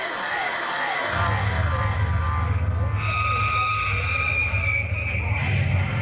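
Crowd at a metal gig shouting, trailing off in the first second. About a second in, a steady low amplified drone from the band's gear starts, and a held high guitar tone sounds in the middle, between songs.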